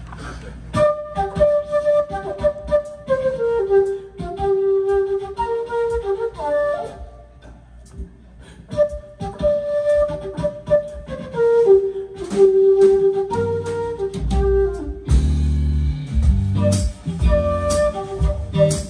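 Amplified concert flute playing a solo melodic line, with a short pause about seven seconds in. A band with bass and drums comes in under it about three seconds before the end.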